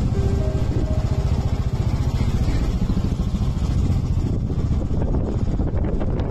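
Royal Enfield single-cylinder motorcycle engine running under way on a rough gravel road, recorded from on board the bike, with a steady, rapid thump.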